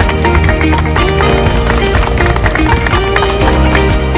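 Background music with a steady beat and a short repeating melodic phrase.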